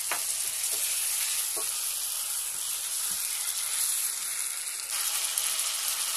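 Chicken pieces frying in hot oil in a nonstick kadhai: a steady sizzle, with a few soft knocks of a plastic spoon stirring.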